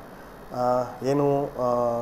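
A man speaking Kannada slowly: after a brief pause, three long, drawn-out syllables held at a level pitch.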